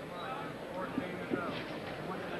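Indistinct chatter of several voices from the ringside crowd and corner, with a couple of short knocks about a second in.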